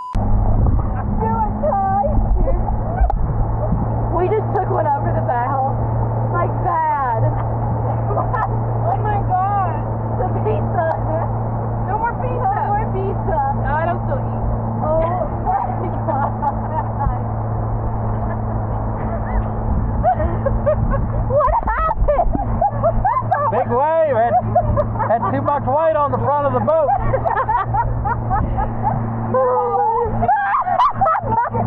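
Pontoon boat's outboard motor running at a steady pitch under way, with voices and laughter over it.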